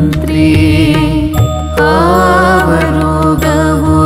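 Kannada devotional song (Dasarapada) sung by a female and a male voice in long held, gliding notes over a steady drone, with keyboard, sarangi and tabla accompaniment. The music dips briefly about a second and a half in.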